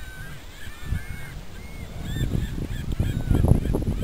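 Geese honking in a quick series of short calls, with a low rumbling noise growing louder in the second half.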